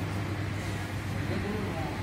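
Station concourse ambience: a steady low hum with faint, indistinct voices talking in the background.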